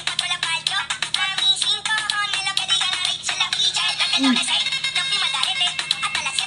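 Dance music with a sung vocal over a steady beat.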